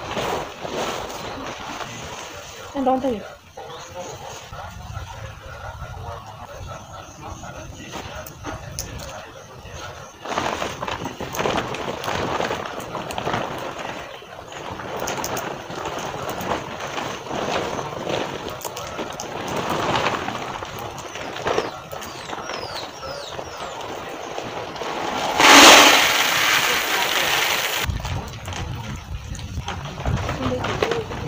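Woven plastic sacks rustling and crackling as they are spread out and handled on the ground, with a much louder burst of noise lasting about two seconds near the end.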